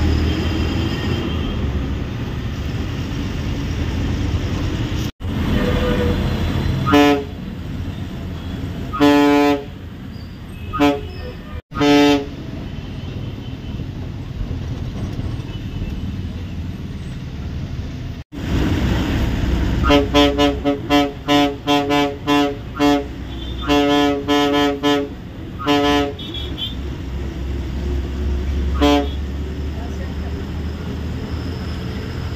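Ashok Leyland bus's horn sounding in short blasts over the diesel engine and road noise in the cab. A few single toots come in the first half, then a rapid string of many short honks about twenty seconds in, and one more near the end. The sound drops out completely for an instant three times.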